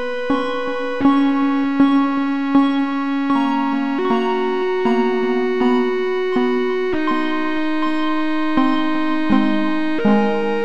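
Improvised electronic keyboard music, an electric-piano-like tone held in sustained chords, with notes struck at an even pulse of about one every three-quarters of a second. The chord changes about four seconds in and again near seven seconds. It is played as an imagined train-crossing warning sound.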